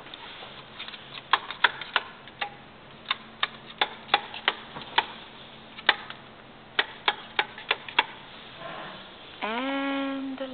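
Wall light switches being flipped one after another: about twenty sharp clicks in irregular runs, over a faint steady hum. Near the end a voice starts a drawn-out exclamation that slides in pitch.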